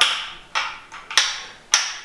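Four sharp plastic clicks about half a second apart from the white PVC base of a linear shower drain being worked by finger at its anti-insect closure flap (fecha-ralo).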